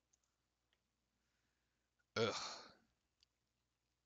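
A man's short, groaned "ugh" of exasperation about two seconds in, fading out within about half a second; otherwise near silence.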